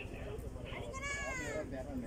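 Background voices of people talking, with one high voice calling out on a falling pitch about a second in, over a low steady rumble.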